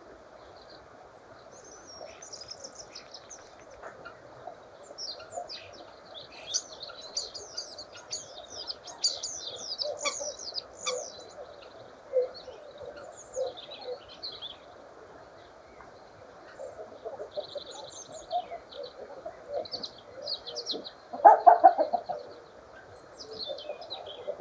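Common starling singing: a varied run of high whistles, chirps and rapid rattles, with a louder, lower burst of sound about three quarters of the way through.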